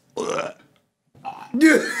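A man's short burp, then from about one and a half seconds in another man laughing hard in quick repeated bursts.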